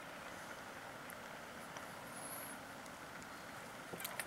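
Faint, steady outdoor background noise with no distinct event, and a brief faint high chirp about halfway through.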